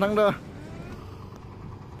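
A man's laughing voice cuts off, leaving a steady low background noise of an outdoor street.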